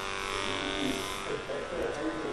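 Handheld motorized disinfectant sprayer running, a steady motor buzz with the hiss of the disinfectant mist being sprayed.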